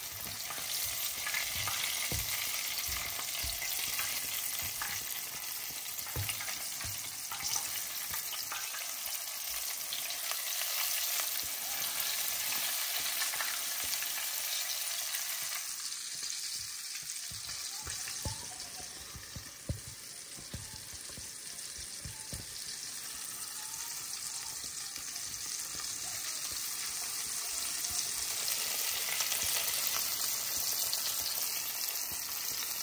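Flour-dredged chicken pieces frying in hot oil in a pot, a steady sizzle throughout. Occasional short knocks of utensils and handling break through it.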